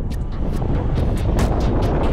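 Four-wheel-drive SUV driving hard over sand dunes: a loud, steady engine and tyre rumble through the sand, with irregular sharp crackles and wind buffeting the microphone.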